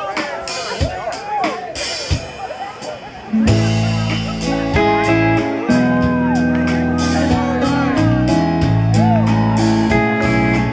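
Audience whoops and cheers, then about three and a half seconds in a live rock band comes in loud with bass, sustained keyboard chords, guitar and drums, starting the song.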